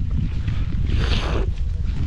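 Wind buffeting the microphone, a loud steady low rumble, with a short hissing rush about a second in.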